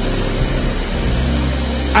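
Steady background music of sustained low chords under an even wash of noise.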